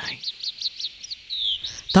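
Bird chirping: a rapid, even series of short high falling chirps, with a longer falling note near the end.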